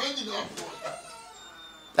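A faint, drawn-out bird call in the background, heard after a brief bit of voice at the start.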